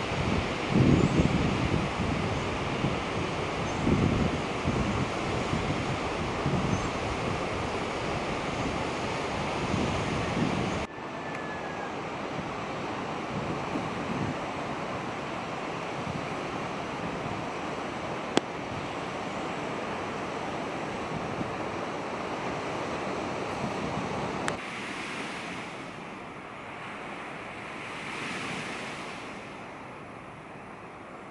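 Wind gusting against the camera microphone over a steady outdoor rushing noise. The sound changes abruptly about eleven seconds in to a steadier, gentler rush, and drops quieter again near twenty-five seconds.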